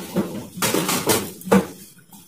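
Dishes and kitchen utensils clinking and clattering, with about four sharp knocks spread over two seconds.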